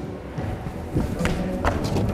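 Quick footfalls of a climber running across gym floor matting, then a few sharp knocks as she jumps onto the bouldering wall, with background music throughout.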